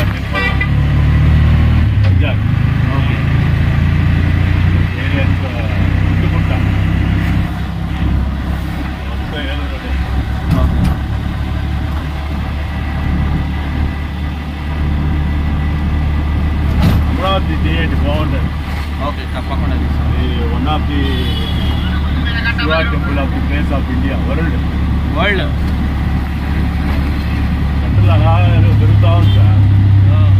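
Auto-rickshaw engine running as it drives, heard from inside the open cabin: a steady low drone that shifts in pitch with speed and gets louder near the end.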